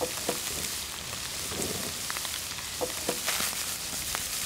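Tuna with onion and chili sizzling in an oiled frying pan, a steady hiss broken by a few light clicks.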